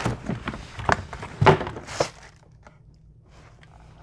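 A cardboard shoe box and its packing being handled and opened: a few short knocks and rustles in the first two seconds, the loudest about a second and a half in, then only faint room noise.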